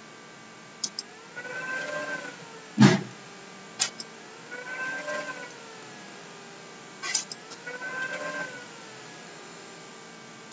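Three drawn-out animal calls, each about a second long and rising then falling in pitch, spaced about three seconds apart. Sharp computer-mouse clicks fall between them, and one heavy thump just before three seconds is the loudest sound.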